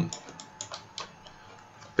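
A few faint, separate clicks of computer input while working in 3D software, mostly in the first second, over low background hiss.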